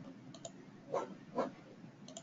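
A few clicks of a computer mouse as PowerPoint slides are selected: a faint one, then two louder ones about half a second apart near the middle.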